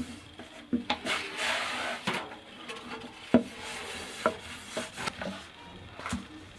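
Long thin wooden rolling pin (oklava) rolling and rubbing over floured yufka dough on a wooden board, with a handful of sharp wooden knocks as the pin strikes the board, the loudest a little past the middle.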